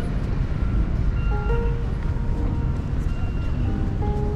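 Soft background music of slow held notes stepping from pitch to pitch, over a steady low rumble of wind and city street noise on the action-camera microphone.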